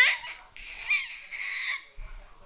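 Baby squealing with excitement: a short rising squeal at the start, then a longer high-pitched shriek from about half a second in, lasting about a second.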